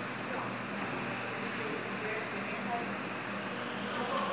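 Steady room noise with faint, distant voices and no loud event.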